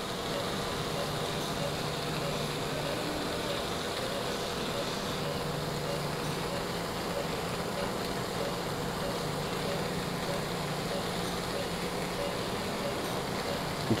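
Steady low mechanical hum with a hiss and a faint high whine, the running background noise of operating-room equipment, unchanging throughout.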